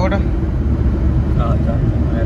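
Steady low rumble of a car driving on the road, heard from inside the cabin.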